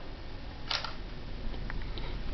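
Handling noise from a handheld camera as it is panned: one short click about three-quarters of a second in, then a few faint ticks, over a steady low hum.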